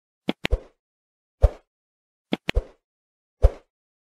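Sound effects of an animated subscribe button: sharp mouse clicks and soft low pops, about eight short hits in four groups with silence between them — two clicks and a pop shortly after the start, a pop about 1.5 s in, two clicks and a pop about 2.5 s in, and a last pop near the end.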